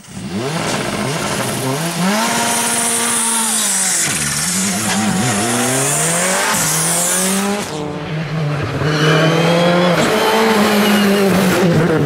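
Rally car engines at full throttle, the pitch climbing and dropping back with each quick gear change, with tyre squeal in the first half. About eight seconds in the sound changes suddenly to a steadier, high engine note.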